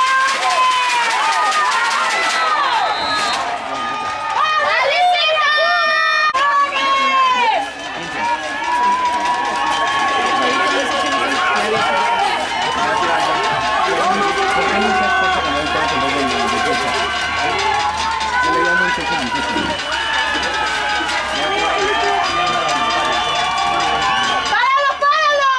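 Crowd of spectators shouting and cheering, many voices overlapping continuously.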